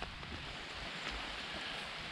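Steady outdoor background hiss of wind and light rain, with no distinct events.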